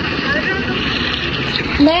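A steady background hiss with faint snatches of a voice, then a woman starts speaking near the end.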